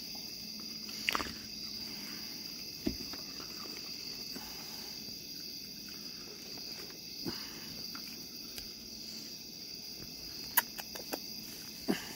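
Steady, high chorus of night insects, crickets, singing without a break, with a few short clicks and taps on top, most of them near the end.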